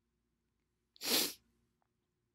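A single short, sharp breath close to the microphone, about a second in, with no voice in it, during a pause in speech.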